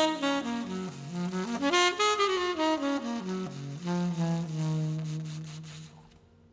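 Tenor saxophone playing a slow ballad melody, moving note to note and ending on a long held low note that fades out at the very end.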